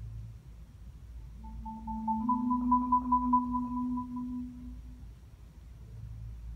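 Solo marimba: a soft low note, then from about a second and a half in a rolled two-note chord, the upper note rapidly re-struck over the lower, that swells and dies away by about five seconds.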